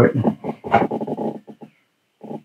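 A man's voice trailing off in low, half-spoken words, with a couple of sharp clicks from resin model parts being handled; it goes quiet just before the end.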